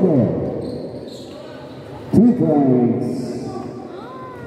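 A basketball bouncing on a hard gym court, with one sharp bounce about two seconds in, in an echoing hall. A man's voice is heard at the start and again after the bounce.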